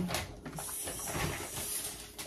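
Rustling and a few light knocks from purchased cosmetic and skincare items being handled and brought out.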